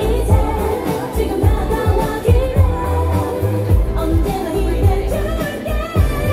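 A K-pop song playing loudly: a singer over a heavy, regular bass beat.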